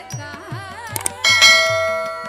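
Carnatic dance music with regular drum strokes and a gliding melody, cut across by a sharp click about a second in and then, about a second and a quarter in, a loud bell ding that rings out and fades: the click-and-bell sound effect of a YouTube subscribe-button animation.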